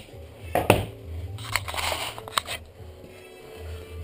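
Plywood boards handled by hand: a sharp knock a little under a second in, then a second or so of scraping and clicking as the boards shift against each other, over faint background music.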